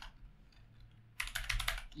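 A quick run of keystrokes on a computer keyboard, starting a little over a second in.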